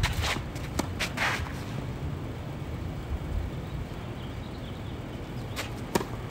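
Tennis shoes scuffing on a clay court in the first second and a half, with a single sharp ball strike just under a second in. Near the end comes the loudest sound, the sharp crack of a racket hitting a serve, over a steady low background rumble.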